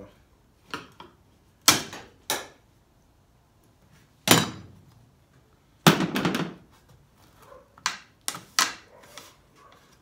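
Trim strip being pried and pulled off the edge of a car's vinyl-top roof by hand: about eight sharp snaps and knocks at irregular intervals, several close together around six seconds in.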